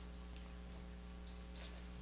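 Quiet room tone: a steady low electrical hum with faint overtones, and a few faint irregular ticks.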